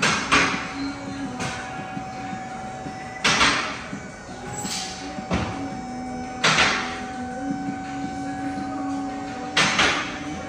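Hunter scissor alignment lift raising a heavy-duty pickup: a steady mechanical hum, broken by four loud rushing bursts about every three seconds.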